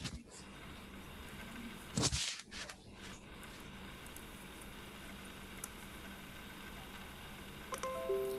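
Quiet background hiss and hum, with one short noisy burst about two seconds in.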